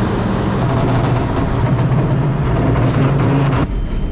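Hook-loader lorry's diesel engine running at raised revs to drive the hydraulic hook arm as it lifts and tilts a steel skip off the back. The steady hum climbs a little midway, with a strong hiss over it, and cuts off suddenly near the end.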